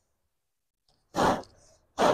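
Two short, breathy exhales of a person, about a second apart, after a moment of silence.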